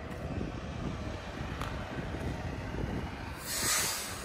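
Low, steady rumbling of wind buffeting the microphone, with a brief louder hiss about three and a half seconds in.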